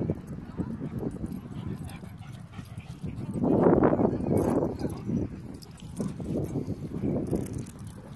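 Footsteps crunching on gravel and dirt as someone walks, with a louder rough rustling swell about three and a half seconds in that lasts around a second.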